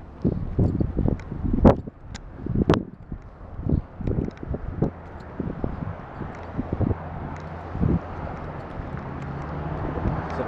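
Footsteps on asphalt and a body-worn camera knocking and rubbing against clothing as its wearer walks, with wind on the microphone. In the second half the knocks thin out and a steady low drone takes over.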